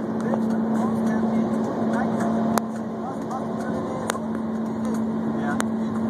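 Road and tyre noise inside a car moving at highway speed, picked up by a phone pressed against a back-seat window, with a steady hum under it. A few sharp ticks come about a second and a half apart from the middle of the stretch on.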